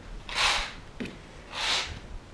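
Sheer curtain fabric swishing twice as it is pushed aside, with a light click in between.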